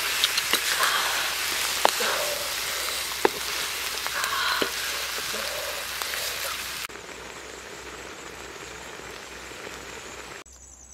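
Beaten eggs frying in a black metal wok over a wood fire, with a dense sizzle as they are stirred and sharp knocks of the wooden spatula against the pan. The sizzle drops off suddenly about seven seconds in, leaving a fainter steady hiss.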